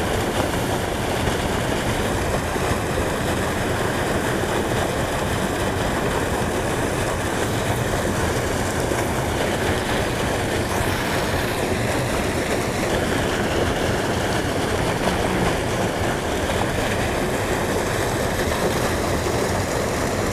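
Fast, heavy spillway outflow rushing over rocks in a steady, unbroken noise.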